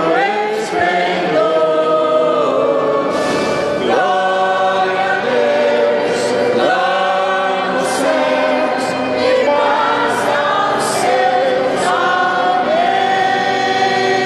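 Church choir singing a hymn during Mass, with long held notes that change pitch every second or two.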